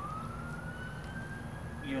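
A siren wailing, its pitch rising slowly and steadily in one long sweep before it turns to fall.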